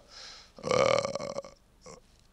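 A man's voice between sentences: a soft breath, then a single drawn-out throaty vocal sound lasting under a second.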